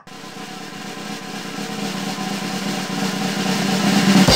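Drum roll sound effect, a steady snare rattle building in volume as a lead-in to announcing a score.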